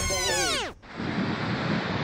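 Background music ending in a tape-stop effect: its notes slide steeply down in pitch and die out within the first second. Steady outdoor noise of wind on the microphone follows.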